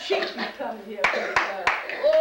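Hand clapping: three sharp claps about a third of a second apart, starting about halfway in, over indistinct voices.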